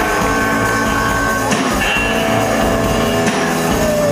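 Live rock band playing: electric guitar over bass and drums, heard from within the audience in the hall.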